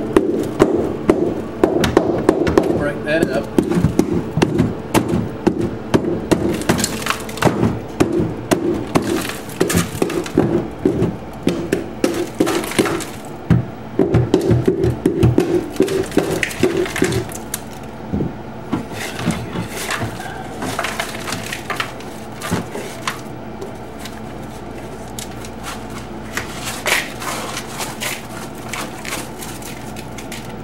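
A hand tool striking and chipping at ice packed around a freezer's drain hole, a run of sharp knocks and cracking, thick at first and sparser after about halfway. The ice is blocking the defrost drain, the cause of the freezer leaking water.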